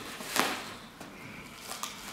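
Bubble-wrap packing rustling and crackling as it is cut open with a small knife, with a sharp crack about half a second in.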